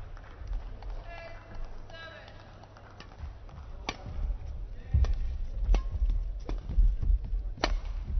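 Badminton rally: sharp racket hits on the shuttlecock roughly a second apart, starting about four seconds in. From about five seconds they come with heavy low thuds of the players' footwork on the court.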